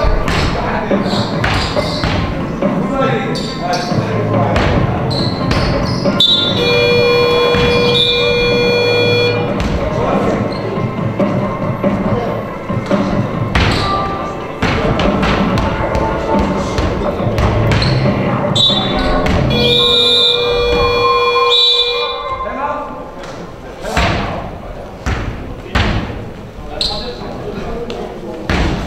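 Electronic game buzzer sounding twice, each blast about two to three seconds long, about six seconds in and again about twenty seconds in. Around it, a basketball bounces on the hardwood court amid the knocks of play in a large gym hall.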